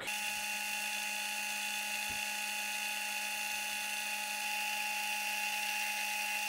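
Metal lathe spinning a small brass rod while a cutting tool turns it down, giving a steady, unchanging whine.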